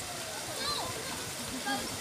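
Small artificial waterfall and rock stream running steadily, with faint voices of people in the background.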